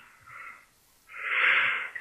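A person breathing in through the mouth: a faint short breath, then a longer, louder inhale from about a second in that runs up to the next spoken words.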